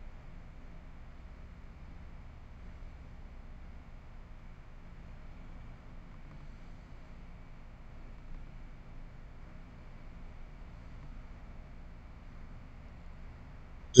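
Faint, steady low hiss of room tone with no distinct sound events.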